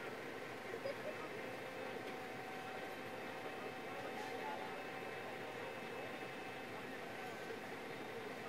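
Steady hum of an idling vehicle engine with faint, indistinct voices of people nearby.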